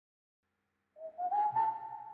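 Silence for about a second, then one whistled note that slides up and holds steady.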